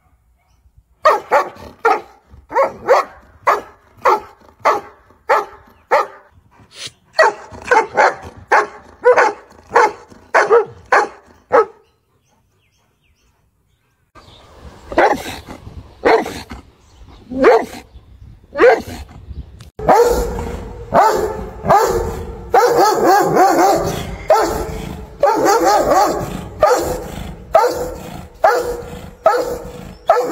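Dogs barking aggressively, about two barks a second, for roughly the first twelve seconds. After a two-second break come a few scattered barks, and from about twenty seconds in the barking turns dense and overlapping.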